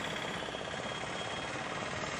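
Steady street background noise at a road junction: an even hiss with no distinct events, and faint steady high tones running through it.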